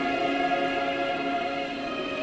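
A choir with orchestral accompaniment singing a slow anthem in long held notes.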